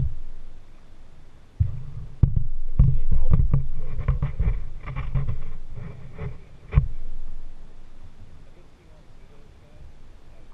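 Kayak hull being paddled, picked up through a camera mounted on its bow: a run of low thumps and knocks, with two sharp knocks about two and seven seconds in, dying away for the last few seconds.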